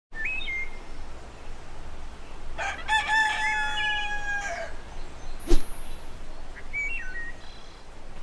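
A rooster crowing once, a long held call of about two seconds. Short bird chirps come near the start and near the end, and a sharp click comes about halfway through, over a steady hiss.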